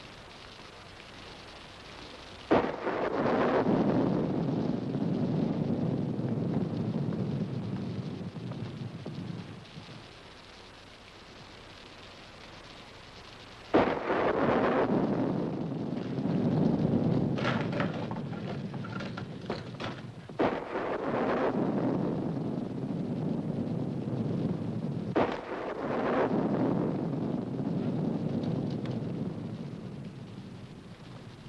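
Thunder: four sudden cracks, each followed by a long rumble that fades over several seconds, the first about two and a half seconds in and the others in the second half, over a steady hiss of heavy rain.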